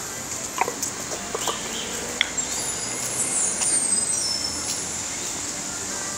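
Busy street traffic noise with scattered short clicks and chirps, the sharpest about two seconds in, and a thin high whistle that slides down and back up about halfway through.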